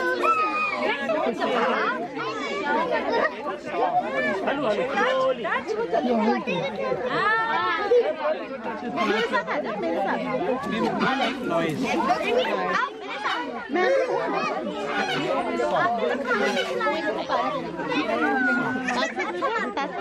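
Several people, children among them, talking over one another: steady overlapping chatter.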